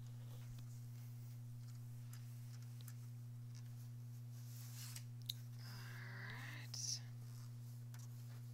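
Faint rustling of quilt fabric as it is smoothed by hand and pressed with an iron, over a steady low hum. A sharp click comes a little past five seconds in, followed by a brief, soft murmur of voice around six seconds.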